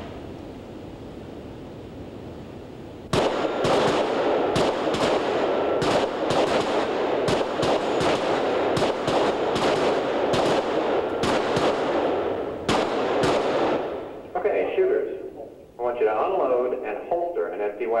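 Handguns fired by several shooters at once on an indoor range: a ragged, overlapping string of echoing shots that starts about three seconds in and runs for about ten seconds before dying away.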